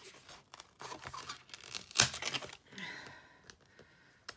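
Paper and cardboard rustling as a card sleeve is pulled off a disc-bound paper planner, with one sharp, loud crackle about two seconds in.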